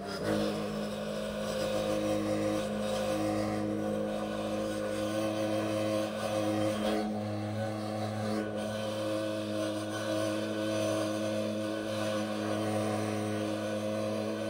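Handheld leaf blower running at a steady speed, its air blast clearing deep snow.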